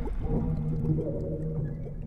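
Intro sound effect for a logo animation: low, sustained drone tones with a slight waver, slowly fading away as the tail of a loud hit.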